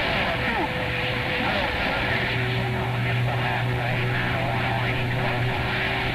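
CB radio receiver on 27 MHz sideband: a steady hiss of band noise with faint, garbled distant voices, two steady whistle tones running through it, and a low hum that comes up about two seconds in.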